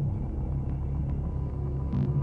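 A loud, deep low rumble with a steady pulsing pattern.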